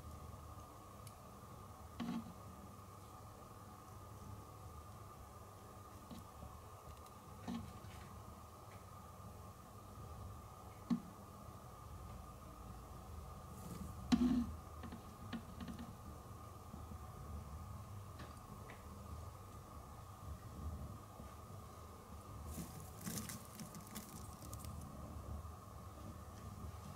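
Quiet room with a steady faint high hum and a few scattered small clicks and light knocks, the loudest knock a little past the middle. A short cluster of crackly clicks comes near the end.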